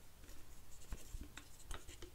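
Faint handling sounds of a drip coffee maker's glass carafe being moved into place: light rubbing with a few soft taps.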